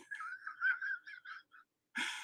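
A faint, high, wavering whine like a dog's in the background, trailing off after about a second and a half. A brighter whine starts suddenly near the end.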